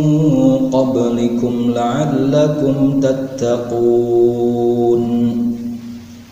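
A man chanting in Arabic in a slow, melodic style, with long held, ornamented notes, tailing off near the end.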